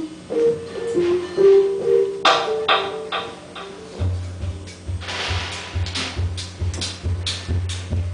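A live band playing a song's intro: a short melody of keyboard notes, then about four seconds in a low pulsing bass and percussion come in with a steady beat.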